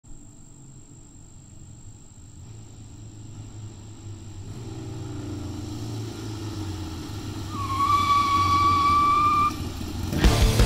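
Several Harley-Davidson Ironhead Sportster V-twin motorcycles approaching, their engine sound growing steadily louder. About three quarters of the way in, a steady high tone sounds over them for about two seconds.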